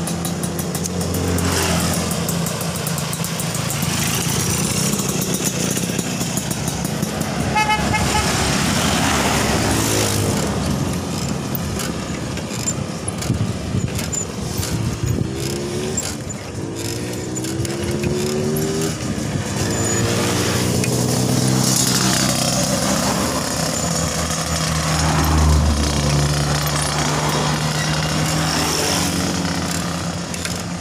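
Road traffic passing close by: motorcycles and cars going by one after another, their engine notes rising and falling as each passes. A short high beep sounds about eight seconds in.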